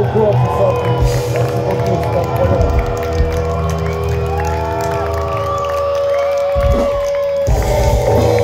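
Live punk band at full volume, a sustained chord ringing over low bass notes while the crowd cheers and shouts. Near the end the low end cuts out for a moment and the full band crashes back in.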